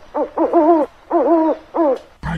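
Owl hooting: about five hoots in quick succession, the two in the middle drawn out longer.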